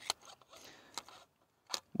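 Small metallic clicks and faint scraping as a cartridge-shaped laser bore sighting device is fitted into the chamber of an M4-type rifle with its bolt carrier removed: a few sharp clicks, one near the start and one about a second in, with soft scraping between.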